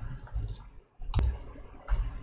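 A single sharp computer mouse click about a second in.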